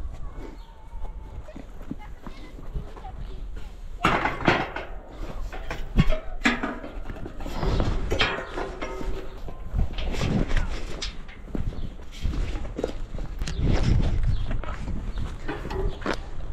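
A BMX bike knocking and rattling against a steel fence as it is hauled over, with a sharp knock about six seconds in and scattered clunks throughout.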